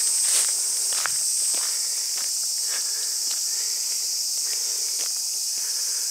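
Footsteps on a paved lane, about two a second, under a steady high-pitched insect chorus from the surrounding brush.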